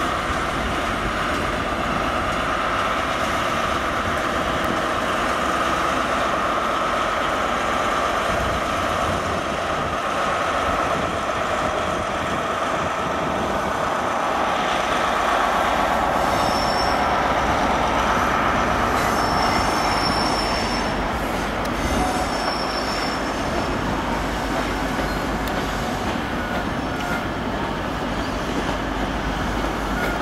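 First Great Western InterCity 125 high-speed train, a Class 43 diesel power car with Mark 3 coaches, rolling slowly along the platform with a steady rumble. Short high-pitched squeals come from the wheels about two-thirds of the way through.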